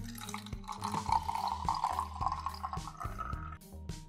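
Sunflower oil pouring from a plastic bottle into a glass vase: a steady stream that stops abruptly near the end, with background music.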